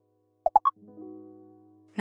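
Short musical transition sting: about half a second in, three quick plop-like blips, each higher in pitch than the last, then a soft held chord that fades out.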